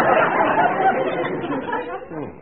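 Studio audience laughing as a dense crowd, fading near the end, heard through an old narrow-band radio recording.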